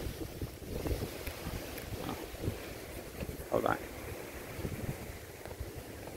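Wind buffeting the microphone, a low uneven rumble, with a brief indistinct voice sound about three and a half seconds in.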